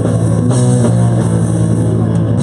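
Live band playing an instrumental passage of electric guitar, bass guitar and drum kit, loud and steady, with no singing.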